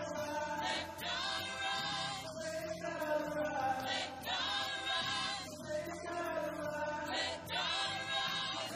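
Gospel choir singing in sustained harmony behind a male lead vocalist, in long held phrases with brief breaks between them.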